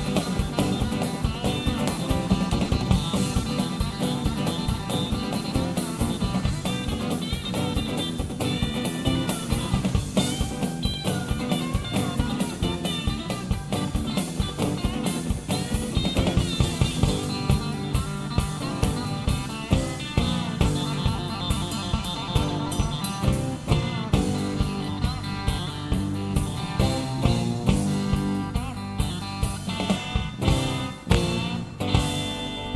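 Live country-rock band playing an instrumental stretch with no singing: electric guitar lead over a driving drum kit and bass.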